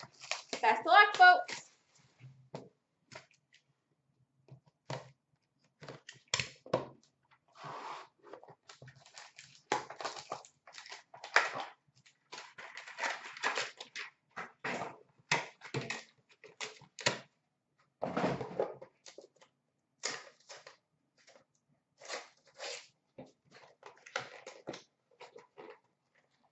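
Cardboard trading-card box and its foil-wrapped pack being handled and opened by hand: irregular taps, scrapes and crinkles of card and wrapper, with short quiet gaps between them.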